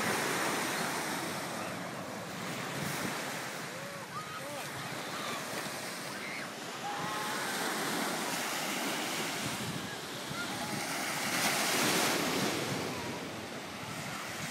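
Small waves breaking and washing up on a sandy beach, swelling and ebbing, loudest a little before the end, with wind buffeting the microphone.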